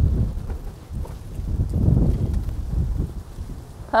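Wind buffeting the microphone: a low, uneven rumble that swells and fades, loudest around two seconds in.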